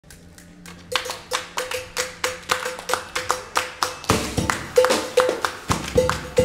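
Several people clapping their hands together in a steady rhythm, about three claps a second, beginning about a second in: the hand-clap count-in that opens a live acoustic band's song. A deeper, fuller sound joins the claps about four seconds in.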